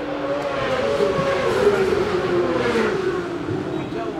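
Racing motorcycle engines running, several engine notes overlapping, with one note sliding down in pitch through the middle.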